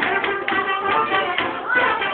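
Romanian folk music for the Capra goat dance: a melody over a steady tapping beat of about four taps a second.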